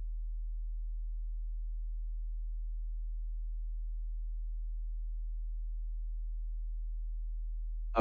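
A steady low electrical hum, one deep unchanging tone, with nothing else heard.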